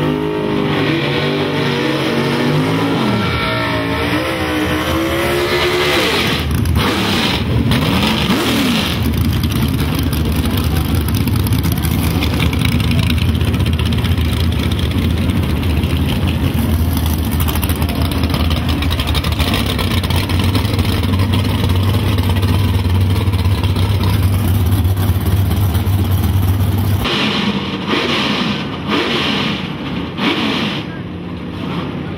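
Small-block V8 drag-car engines revving, the pitch rising and falling in repeated blips. Then one engine is held at a steady, loud, unchanging speed for about eighteen seconds and cuts off suddenly near the end.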